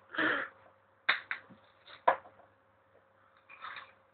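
A few sharp clinks from a pint glass of ice cubes handled against the hot tub's rim, about one to two seconds in. Short breathy sounds come at the start and near the end.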